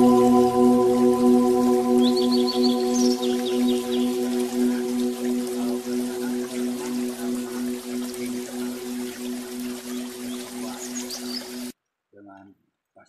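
A single struck bell tone, a deep ringing hum with higher overtones, sustains with a slow pulsing waver and fades gradually, then cuts off suddenly near the end.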